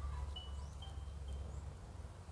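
Faint outdoor background: a few short, high chirps from small birds over a low, steady rumble.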